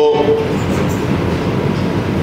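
Steady, fairly loud background noise with no clear rhythm or pitch. A man's voice trails off just after the start.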